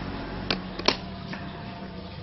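Two sharp taps on a box, the first about half a second in and the second, louder, about a second in, over a steady low hum.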